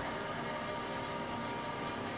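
Steady background hum and noise, even in level, with faint held tones and no clear rhythm or separate events.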